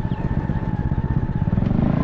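Motorcycle engine running steadily while riding, a pulsing low rumble that grows a little louder near the end.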